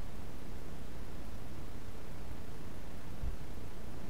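Steady low background rumble and hiss, with no distinct sounds standing out.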